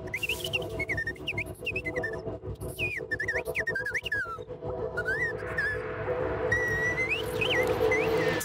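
Hand-held whistle played live in quick swooping chirps and pitch glides over an electronic drum and bass backing with steady held drone notes. About five seconds in, a swelling wash of noise builds under the whistle.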